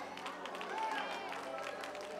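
A church organ holds a soft, steady chord while scattered faint shouts and responses come from the congregation.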